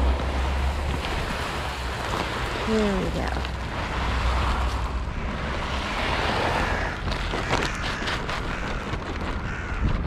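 Steady rushing noise of wind buffeting the microphone, with a low rumble strongest at the start, and the rustle of a woven plastic feed sack handled close by.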